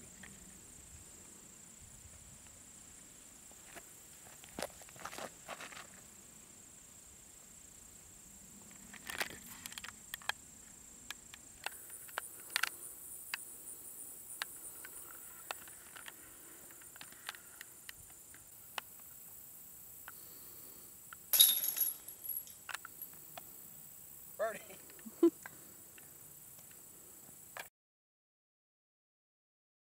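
Quiet open-air ambience with a steady high-pitched insect drone, over scattered light footsteps and handling clicks. One short, loud clatter comes about 21 seconds in.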